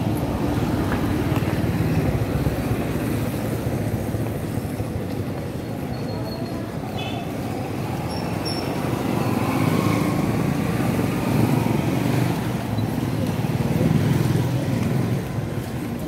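Outdoor road noise: a continuous low rumble of passing vehicles that swells louder twice, longest in the second half, with a faint engine whine about ten seconds in.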